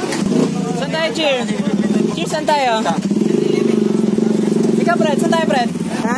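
A motor vehicle engine running steadily with a low hum, with short stretches of talk over it.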